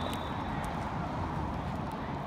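Footsteps of a person walking quickly on a concrete walkway, over a steady rushing background.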